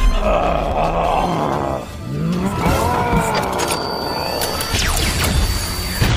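Animated battle soundtrack: background music mixed with crashing debris effects, and a drawn-out voiced cry about halfway through.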